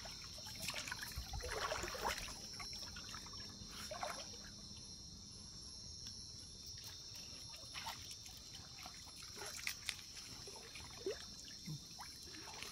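Water trickling and splashing as a wet cast net is gathered and handled in a river, in irregular small splashes. A steady high-pitched insect chorus sounds behind it.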